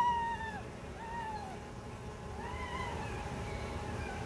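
Three high-pitched, drawn-out whining cries: the first already sounding and dying away within the first second, a short one at about a second, and a longer rising-and-falling one near three seconds in.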